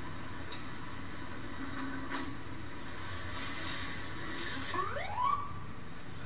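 Steady rumble and hiss of outdoor news-footage sound played back through a computer speaker, with a faint click about two seconds in and a short rising whoop near the end.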